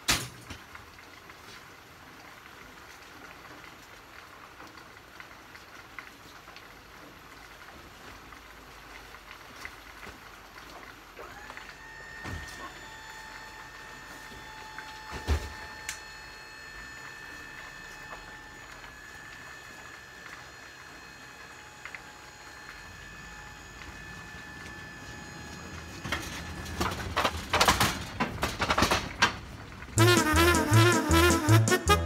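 Steady rain falling on a wet lot and truck trailers. A steady whine holds for about fifteen seconds in the middle, with a couple of single knocks, and a burst of clattering and knocking comes near the end.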